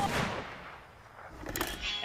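A handgun shot at the start, its sound dying away over about half a second. A short clatter of sharp clicks follows about a second and a half in.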